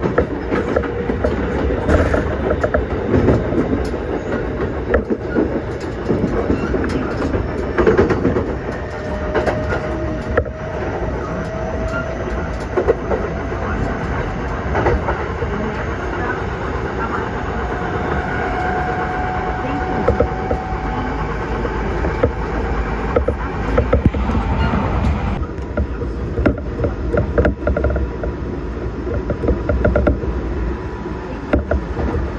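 Ride noise of an electric train heard from inside the carriage: a steady low rumble with irregular clicks of the wheels over rail joints and points, and faint whining tones that rise slightly and come and go.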